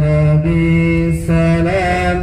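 A male voice singing an Arabic devotional song in praise of the Prophet, holding long drawn-out notes that step between pitches, over the steady low rumble of the moving coach.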